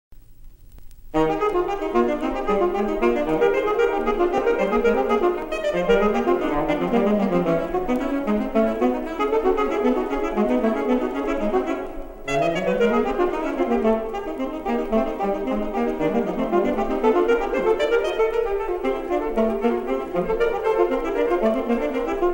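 Two alto saxophones playing a fast, virtuosic duet that starts about a second in, full of rapid runs that rise and fall and often cross in opposite directions. There is a brief break near the middle before the runs start again.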